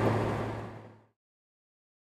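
Honda Gold Wing riding at highway speed: a steady engine hum under wind and road noise, fading out within about the first second.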